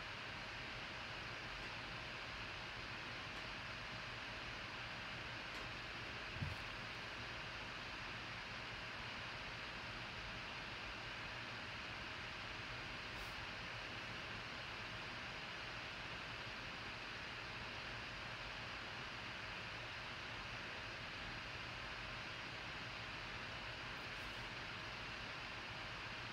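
Steady low hiss of room tone with a faint steady hum, and one short soft knock about six seconds in.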